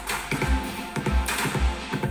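Music with a steady bass beat, about two thumps a second, played from a phone through a JBL Flip 3 and a Harman Kardon Onyx Studio 4 Bluetooth speaker.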